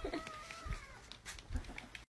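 A cat's faint drawn-out meow, gliding slowly down in pitch and fading out about a second in, followed by a few soft knocks.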